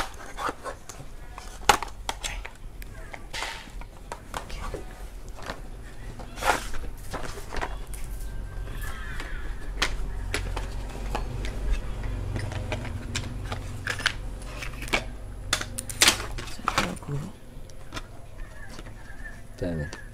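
Scattered sharp clicks and knocks of a corded power drill and a small packet of parts being handled, over a steady low hum that swells in the middle.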